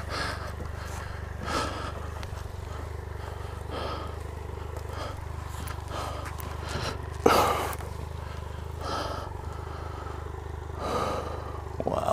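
Triumph Explorer XCa's three-cylinder engine running steadily at low revs, with a man's heavy breathing in short puffs every second or two. The loudest breath comes about seven seconds in.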